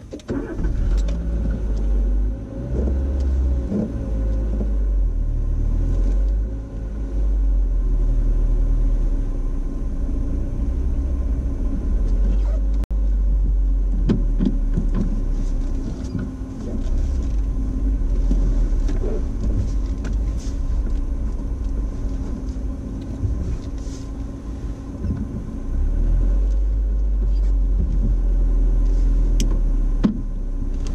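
Small car's engine running at low speed, heard from inside the cabin as a steady low rumble that rises and falls as the car is reversed and then driven slowly forward.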